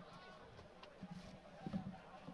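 Faint race-broadcast background: a low murmur of distant voices over a steady hum, with a slightly louder moment near the end.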